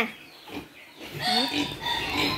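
Wild boars grunting: a single short grunt about half a second in, then a run of rough grunts through the second half.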